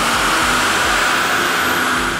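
The turbocharged 5.9 L Cummins inline-six diesel of a 2006 Ram 2500 running hard on a chassis dyno during a power pull on its new performance tune. It makes a loud, steady rush, with a faint high whine that slowly falls in pitch.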